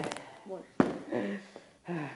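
A boy's triumphant shout of "Yeah!" trails off, followed by a few short vocal sounds and two sharp clicks, one at the very start and one just under a second in.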